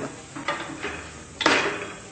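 Wooden spoon scraping and knocking against an aluminium pot as a piece of beef shank is turned in its braising liquid. There are a few separate strokes, and the loudest comes about a second and a half in.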